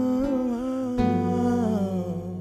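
Nylon-string classical guitar strummed, with a fresh chord about a second in, under a long wordless sung note that wavers with vibrato.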